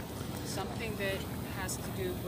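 Indistinct voices talking, not loud enough to make out words, over a steady low rumble of outdoor noise.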